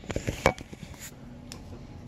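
A plastic glitter glue bottle being squeezed and handled against a glass mixing bowl: a quick run of sharp taps and clicks in the first half second, then a couple of faint ticks.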